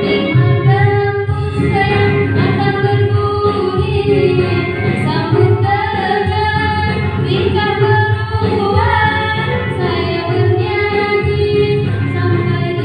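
A girl sings a Malay song into a microphone, holding long notes that bend and waver in pitch.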